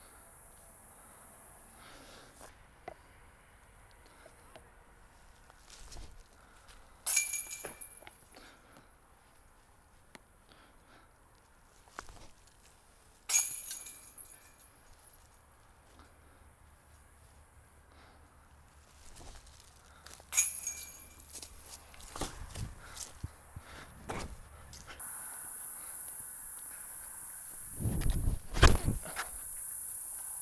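Three sharp metallic clanks with a brief ring, about six or seven seconds apart: golf discs striking a chain basket during approach-shot practice. Later a steady high insect buzz comes in, with a few heavy low thumps near the end.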